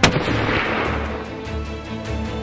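A single rifle shot fired at a nyala bull: one sharp crack followed by a rolling echo that fades over about a second.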